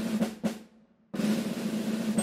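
Snare drum roll sound effect, cutting out briefly just before the middle and then starting again, as the bracket of matches is revealed.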